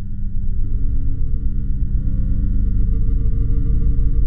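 Low, steady electronic drone of held tones, swelling in over the first second, with fainter high ringing tones above it.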